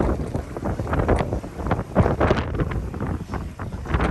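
Wind buffeting the microphone: an irregular, gusty rumble, heaviest in the low end, with uneven surges throughout.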